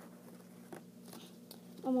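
Faint clicks and rustling of trading cards being picked up and handled, a few soft ticks over a steady low hum, with a boy's voice starting near the end.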